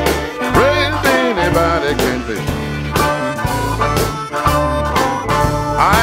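Electric blues band in an instrumental break: a harmonica plays a solo with bent notes over bass, guitar and a steady drum beat.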